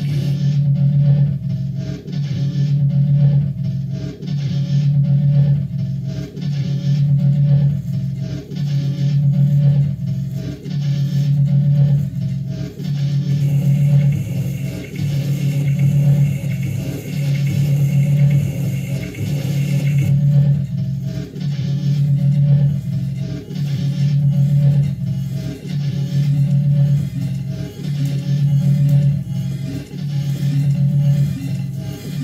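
Live electronic music played through an amplified speaker: a heavy low drone that throbs in a loop about every two seconds. A higher, hissing layer rides over it for several seconds in the middle.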